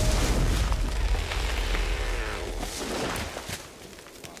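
The tail of a large explosion in a film's sound design: a dense noise with scattered crackles that fades steadily and has nearly died away near the end.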